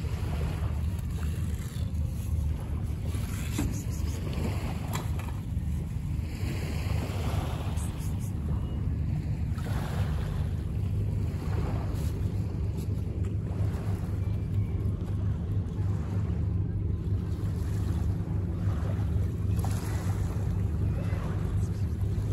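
Steady low rumble of wind on the microphone, with the sea faintly in the background.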